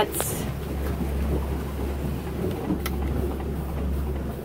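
Boat engine running with a steady low hum, heard from inside the cabin, with a couple of light clicks.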